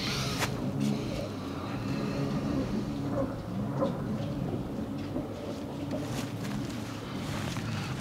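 An engine running steadily throughout, its pitch wavering slightly, with a single sharp click about half a second in.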